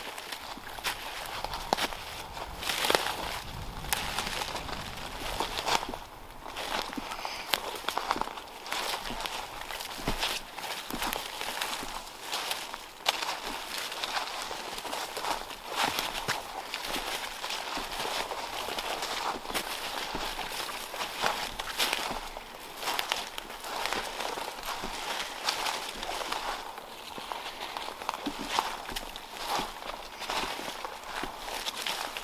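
Footsteps crunching and rustling through dry fallen leaves and twigs on a forest floor, an irregular run of crackling steps.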